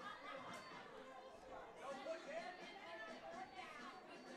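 Faint, indistinct chatter of several voices, no words clear.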